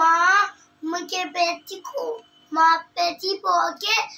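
A young boy singing in a high voice, a string of short phrases with some notes held and wavering.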